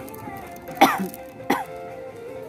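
A person coughing twice, the first cough louder, over background music with steady held tones.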